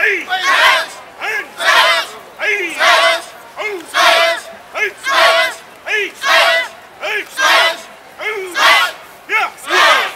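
A group of karate students shouting together in unison with their techniques, a steady rhythm of loud, short shouts about two a second, often in pairs of a shorter then a longer shout.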